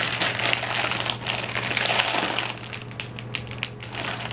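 Plastic snack bag of Candy Pop popcorn crinkling and crackling steadily as it is gripped and pulled hard at the top to force it open.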